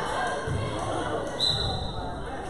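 Basketball bouncing on the gym floor, two low thuds about a second apart, echoing in a large hall. A brief high whistle cuts in near the end, over the chatter of spectators.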